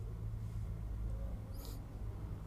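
Steady low background hum, with one brief high-pitched squeak about one and a half seconds in.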